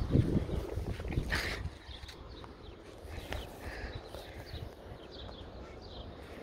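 Wind rumbling on a phone microphone, with irregular knocks and rustles from handling the phone, louder for the first couple of seconds and then quieter.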